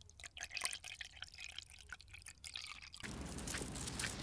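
Milk poured slowly onto scoops of ice cream in a glass: faint scattered drips and small pops. About three seconds in it gives way to a steady hiss.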